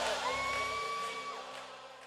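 Live worship music and congregation fading out steadily. One held high note sounds for about a second over the fading mix.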